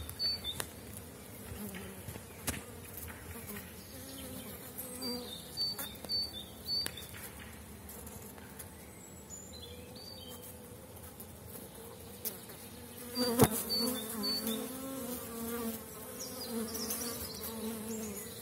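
Honeybees buzzing over the open frames of a crowded hive, a steady hum that gets louder after a sharp click about 13 seconds in.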